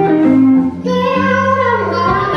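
Live blues band: a woman singing over electric guitar, bass guitar and keyboard, her voice gliding down on a held note in the second half.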